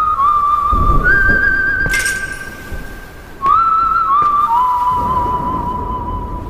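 A slow whistled melody from the soundtrack, two long phrases whose notes open with a slight upward slide and waver a little, over a low rumble. A short ringing hit sounds about two seconds in.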